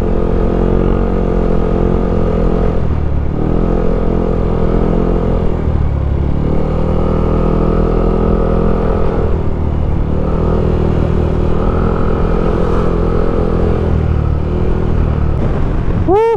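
Sport motorcycle engine running at riding speed, heard from the rider's own bike, its note dipping briefly about every three to four seconds before settling again.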